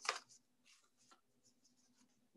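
Brief rustle of greeting-card paper being handled and slid together at the start, followed by near silence with only a couple of faint paper scratches.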